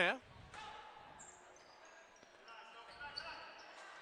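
Faint gymnasium ambience during a stoppage in a basketball game: distant voices in a large hall and a few faint high squeaks.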